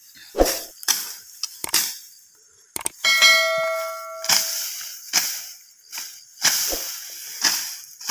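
Machete (bolo) slashing through tall grass and weeds in repeated sharp strokes, roughly one a second. About three seconds in, a clear metallic ring lasts just over a second.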